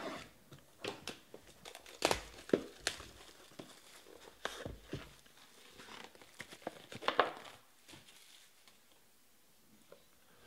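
Plastic shrink wrap being torn and crumpled off a sports card box, in irregular crackles, loudest about two seconds in and again around seven seconds.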